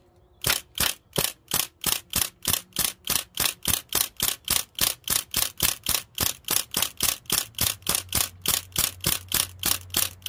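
MP40-replica BB gun firing shot after shot at a steady pace of about three a second, emptying its magazine.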